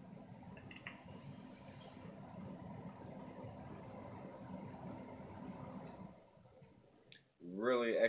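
A vaper drawing a long hit from an e-cigarette and blowing out the vapour: a steady rush of breath lasting about six seconds. A single click follows about a second later.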